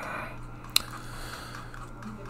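A quiet pause with a faint low hiss and one short, sharp click a little before the middle.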